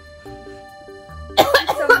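A woman coughing and spluttering, starting about a second and a half in, after a cooling spray got into her mouth. Soft background music plays underneath.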